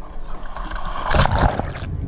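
Water sloshing and splashing around a diver at the surface, with a louder burst of splashing and bubbling about a second in as the camera goes under.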